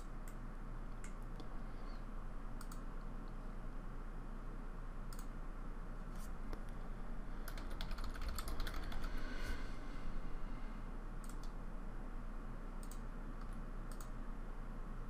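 Computer keyboard typing: a quick run of keystrokes about eight seconds in, with scattered single clicks before it, over a faint steady low hum.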